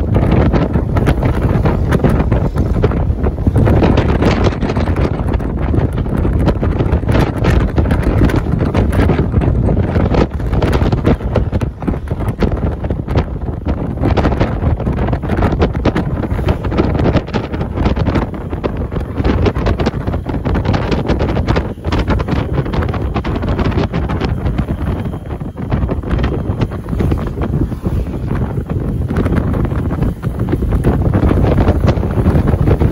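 Wind buffeting the microphone of a camera riding on a moving vehicle, a loud, steady rush over the low rumble of the vehicle on the road.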